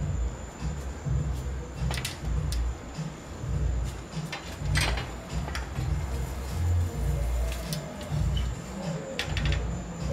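Background music with a heavy bass line pulsing irregularly. A few sharp clicks come about two, five and nine seconds in, over a faint steady high-pitched whine.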